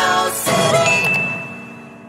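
Animated end-screen sound effects: a short sweeping whoosh, then a bright ding that rings on and slowly fades, over music.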